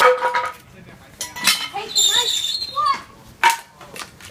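A few sharp knocks and clanks on a hard surface, one at the start, a pair just after a second in and one more past three seconds, with snatches of children's voices between them.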